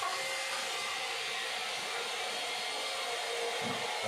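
A steady rushing noise like airflow, holding an even level throughout with no breaks.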